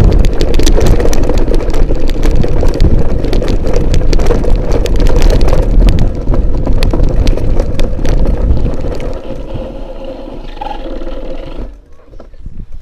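Wind buffeting an action camera's microphone: a loud, crackling rumble that eases off about nine seconds in and drops away sharply just before the end.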